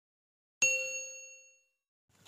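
A single bright bell 'ding' sound effect that rings out and fades away over about a second. It is the notification-bell chime of a subscribe-button animation.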